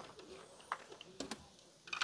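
Faint bird calls with a few soft clicks.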